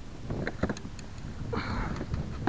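Handling noises from a hooked largemouth bass and lure held by hand: a few sharp clicks and knocks, then a brief rustle near the end, over a low rumble of wind on the microphone.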